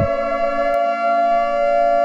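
A steady, siren-like electronic tone held at one pitch, several tones sounding together, with a faint click just under a second in.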